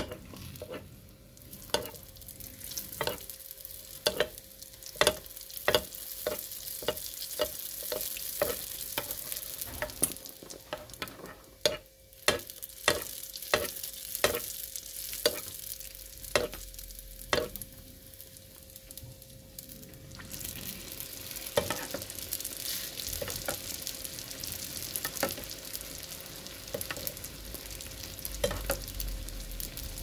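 Sfenj dough sizzling as it deep-fries in hot oil in a frying pan, while a metal spoon bastes oil over its top, clicking against the pan about once or twice a second for the first eighteen seconds or so. After about twenty seconds the clicks thin out and the sizzling grows louder and brighter.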